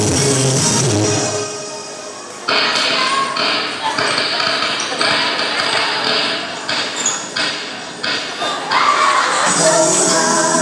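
Dance music over a hall sound system fades out about a second in. After a short lull, a steady run of sharp beats or hits, about two a second, plays with voices until the music comes back near the end.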